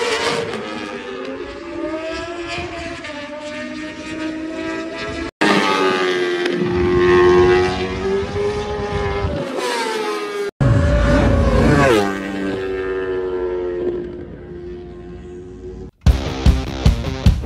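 Honda CBR1000RR-R Fireblade superbike's inline-four engine heard from trackside as it laps, its note rising and falling with the throttle and gears. It comes as three short pieces joined by sudden cuts, and fades away near the end.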